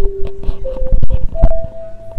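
A chime of three steady notes, each higher than the last, with several sharp knocks over it, footsteps on a hard tiled floor.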